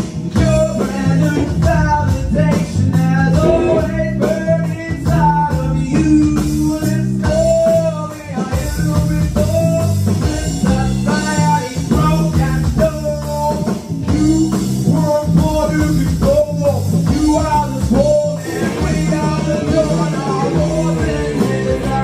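A rock band playing live: a man singing into a microphone over electric guitars, bass guitar and an electronic drum kit.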